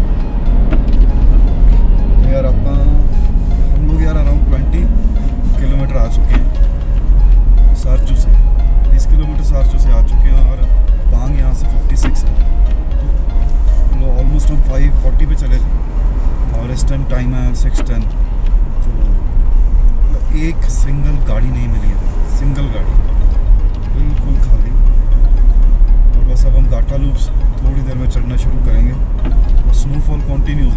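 Steady low rumble of a car's engine and tyres inside the moving cabin, with voices and music underneath and occasional small knocks from the road.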